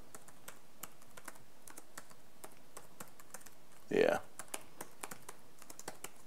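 Typing on a computer keyboard: a run of light, irregular key clicks as a terminal command is typed out.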